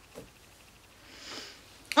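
A person sniffing, a short breath drawn in through the nose about a second in, against an otherwise quiet room.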